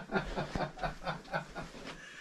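A man laughing quietly in a run of short, breathy snickers.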